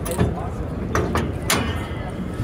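Metal swing-gate arm of a Jeep Gladiator rear-bumper tire carrier being swung shut and latched: a few metallic clicks and knocks, the sharpest about one and a half seconds in.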